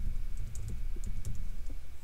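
Typing on a computer keyboard: an irregular, quick run of key clicks.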